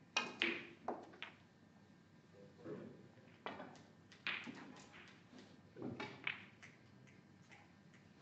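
Snooker balls struck and colliding: a sharp click of the cue tip on the cue ball, then a clack of the cue ball hitting an object ball a moment later. Several more scattered sharp knocks of balls follow over the next few seconds.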